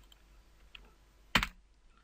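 Computer keyboard keys being pressed: a few faint taps and one sharp, loud key press about one and a half seconds in.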